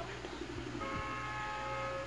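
A vehicle horn sounds once about a second in, a single steady held note lasting about a second.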